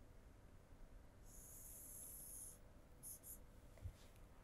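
Faint scratching of a stylus drawing a line across an interactive touchscreen, lasting about a second and a half, followed by two short strokes; otherwise near silence.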